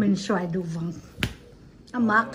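A few words of speech, then a single sharp click a little past a second in.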